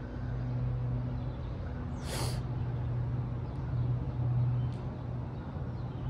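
A steady low machine hum, with a short, sharp hiss about two seconds in.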